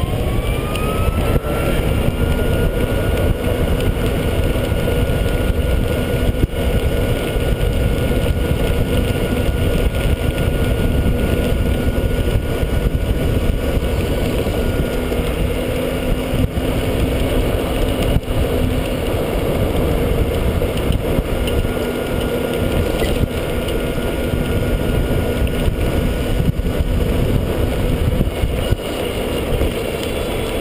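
EZ-GO RXV golf cart driving, its drive whine rising in pitch over about the first two seconds as it gathers speed and then holding steady, over a steady low rumble of tyres and wind.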